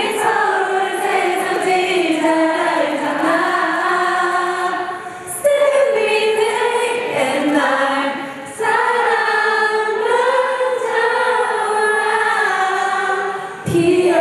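Many voices singing a melody together in long held phrases, with three short breaks between phrases.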